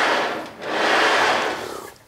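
Sliding table of a Hammer B3 Winner combination machine being rolled along its guide and back, running smoothly: two even rolling runs, the first dying away about half a second in, the second swelling up and fading out near the end.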